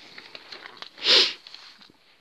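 One short, sharp sniff about a second in, over the light rustle and clicks of newspaper clippings being handled.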